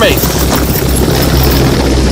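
Loud, steady low mechanical drone with a hiss over it, like an engine or rotor.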